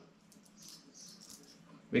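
Faint scattered clicking and rattling of small metal RC steering links being handled in the hands.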